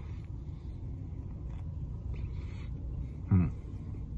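A man chewing a mouthful of fried chicken biscuit, with faint soft chewing sounds and a short hummed 'mm' about three seconds in, over a steady low rumble.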